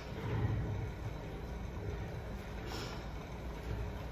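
Quiet, steady low rumble of spin-bike flywheels being pedalled, with a brief soft rustle a little under three seconds in.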